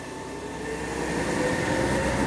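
Compressed-natural-gas front-loader garbage truck's engine pulling away, its low rumble growing louder and its pitch rising slowly as it accelerates.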